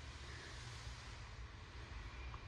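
Faint room tone: a steady low hum with light hiss, and no distinct sound events.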